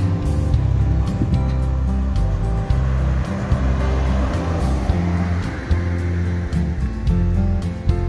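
Background music, with a car passing midway through: its road noise swells and fades under the music.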